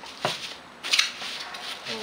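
Long metal linear guide rails being handled and shifted on bubble wrap: a light knock about a quarter second in, then a short rustle about a second in.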